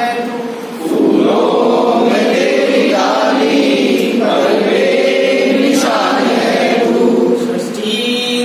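A group of adults singing a slow Hindi prayer song together, unaccompanied, in long held notes. There are short breaks for breath about half a second in and again near the end.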